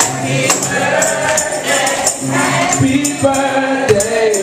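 Church congregation singing a birthday song together, gospel style, with a tambourine struck and shaken along in a quick steady beat.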